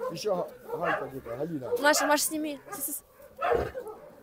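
Several shelter dogs making short, high-pitched calls, mixed with people's voices talking close by.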